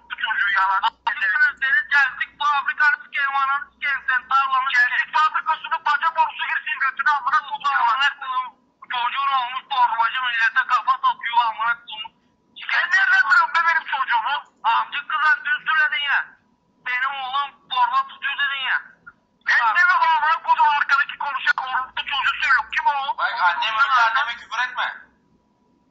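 Speech heard over a telephone line: a voice with the thin, narrow sound of a phone call, going on with short pauses.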